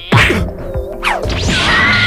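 Cartoon punch sound effect: a sharp whack just after the start, then a falling swoosh about a second in, over background music.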